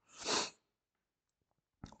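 A man's single short, sharp burst of breath through the nose near the start, under half a second long, followed by a faint in-breath just before he speaks again.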